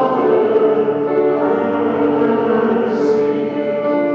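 Church congregation and choir singing together, long held notes that change every second or so.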